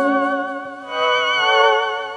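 Electronic keyboard playing sustained chords with a slight vibrato: one chord fades out, then a second swells in about a second later and dies away.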